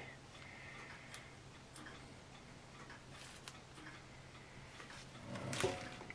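Quiet handling sounds as a small resin-filled mold is lifted out of a vacuum chamber: a few faint clicks, then a louder brief knock and rustle about five and a half seconds in, over a faint low hum.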